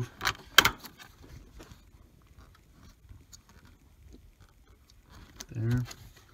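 Hands handling plastic engine-bay parts, a wiring connector and a fuel-line mounting tab: two sharp clicks close together about half a second in, then faint rustling and rubbing.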